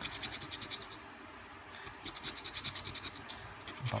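A coin scraping the coating off a paper scratch-off lottery ticket in quick, rapid back-and-forth strokes, easing briefly about a second in before picking up again.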